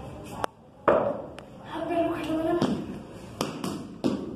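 Sharp knocks of a cricket bat and ball in an indoor game, about six in all, the loudest just under a second in, with children's voices in between.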